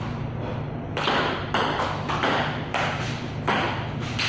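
Table tennis rally: a celluloid ball clicking off bats and table, about two hits a second, starting about a second in.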